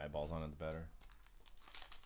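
Foil trading-card pack wrapper crinkling as it is handled and torn open by hand, mostly in the second half, under a low voice.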